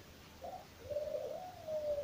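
A bird's low cooing call: a short note about half a second in, then a long drawn-out note that rises slightly and falls away near the end.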